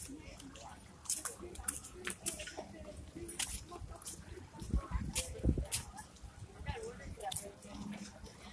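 Rustling and clicking of a handheld camera carried while walking, with a few low thumps on the microphone about five seconds in, over faint voices of people nearby.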